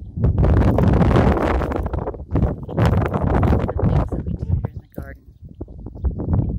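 Wind buffeting the phone's microphone in two long, loud gusts of rumbling noise.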